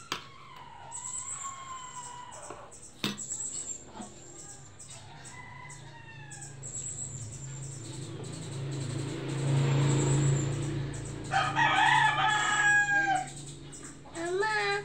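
Drawn-out bird calls with bending pitch. A weaker one comes in the first two seconds and the loudest about eleven to thirteen seconds in. Before that loudest call, a rush of noise with a low hum swells and fades around ten seconds in.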